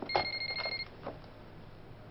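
Telephone ringing with an electronic tone: one ring of under a second, followed by a soft knock about a second in.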